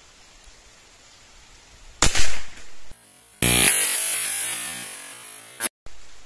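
A single shot from a CBC B57 .177 (4.5 mm) PCP air rifle about two seconds in: a sharp crack that fades within a second. About a second later a sustained musical ringing tone starts, fades over two seconds and cuts off abruptly.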